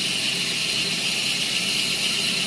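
Stainless steel tube spinning in a mill's collet while abrasive paper is held against it to polish it: a steady hiss of the running machine and the paper rubbing the tube.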